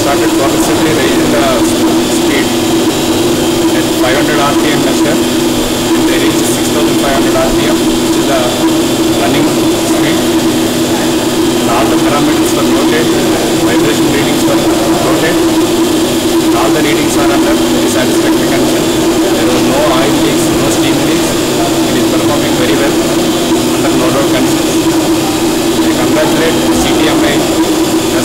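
A 3 MW condensing steam turbine running on a no-load steam trial. It gives a loud, steady drone with a strong, even hum that does not change.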